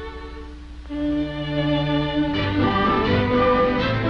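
Orchestral cartoon score led by strings playing held chords. It is quieter at first, swells louder about a second in, and turns busier from about halfway.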